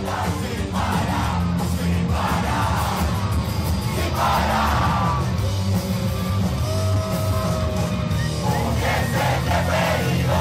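Punk rock band playing live at full volume, a dense wall of bass and guitar with shouted vocals over it, and the crowd yelling along.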